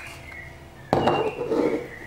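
A sharp knock about a second in, as a glass soy sauce bottle is set down on the worktop, with a brief high ringing after it. A small click comes just before it.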